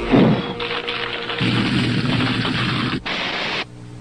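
Cartoon sound effect of a flamethrower firing: a sudden burst, then a steady rushing hiss of flame for about three seconds that cuts off abruptly, over background music.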